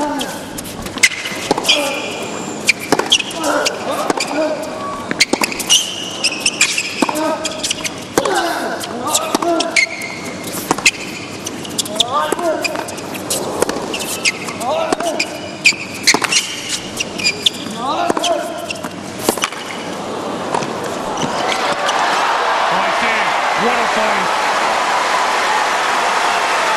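A long tennis rally: racquet strikes on the ball come about once a second, many of them with the players' loud grunts. About 20 seconds in the rally ends and the arena crowd breaks into steady applause and cheering.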